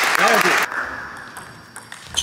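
Spectators clapping and cheering, with one shout, as a table tennis rally ends; the applause is loud at first, then dies down within about a second.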